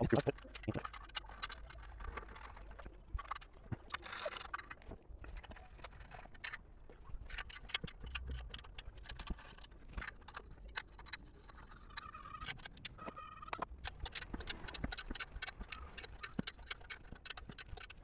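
Small screws being turned by hand through white metal bench-leg brackets into a wooden board: a long run of quick, irregular clicks and light scrapes.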